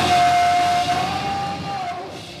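Live rock band at the end of a phrase: the band's sound dies away while one long steady high note carries on, dipping slightly in pitch near the end.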